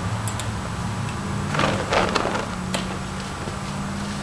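Colour guard flag swung through the air, its fabric giving a whoosh about a second and a half in, with a few light clicks over a steady low hum.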